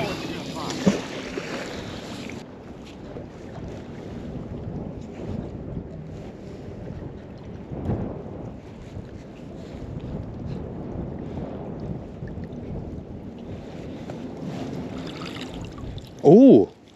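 Steady wind buffeting the microphone over lapping water, while a magnet-fishing rope is hauled in hand over hand.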